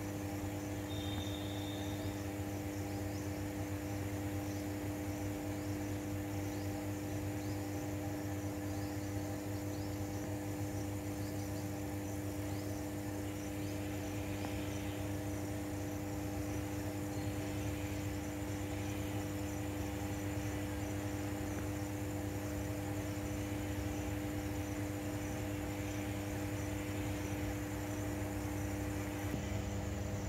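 Steady low electrical hum from high-voltage substation equipment, with insects chirping in a fast repeating pattern over it.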